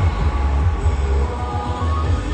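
Background music with a heavy, pulsing bass and sustained tones.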